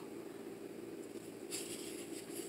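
Quiet workshop room tone with a low steady hum, and a faint brief rustle about one and a half seconds in as the wooden armrest piece is handled.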